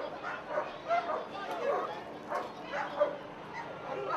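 Police German Shepherd dogs barking repeatedly in short, irregular barks, mixed with people's voices.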